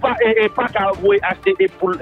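A voice talking without pause over a steady background music bed.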